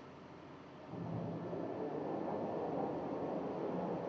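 Steady running noise of farm machinery, a tractor-driven diet feeder mixer, fading in about a second in.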